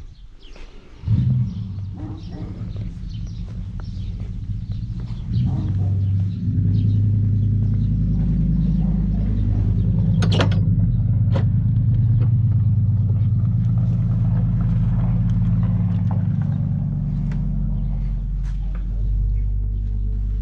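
A steady low hum that swells about six seconds in and stays loud. About ten seconds in there is a sharp click, and another a second later, as the wooden church door's latch is worked.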